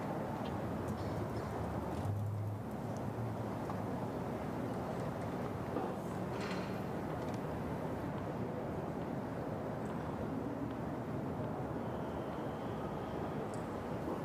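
Steady low murmur of a tennis stadium crowd waiting between points, with a few faint, scattered ticks.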